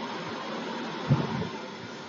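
Steady hiss of background noise in a home recording, with a brief low thump a little over a second in.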